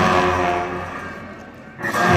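Ritual cham dance music played on large cymbals and drum: a struck stroke rings out with many overlapping pitches and fades over nearly two seconds, over a low drumming, then a second stroke starts near the end.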